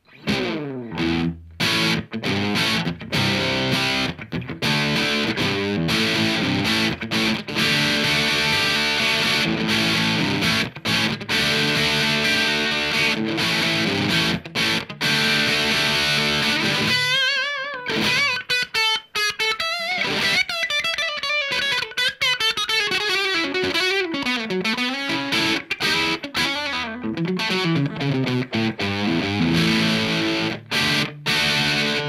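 Electric guitar played through a Wampler Sovereign distortion pedal: heavily distorted riffing chords for about the first seventeen seconds, then a single-note lead with bends and vibrato. The tone is the old Marshall sound.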